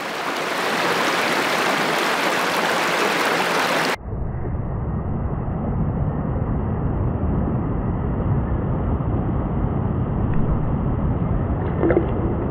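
Running water of a shallow rocky stream, a steady hiss, for about four seconds; then an abrupt cut to a muffled, rumbling sound of water close to the microphone, with the high end gone.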